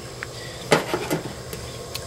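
A few light clicks of a hard plastic test comparator being handled and set down on a table, the sharpest about three quarters of a second in, over a faint steady background.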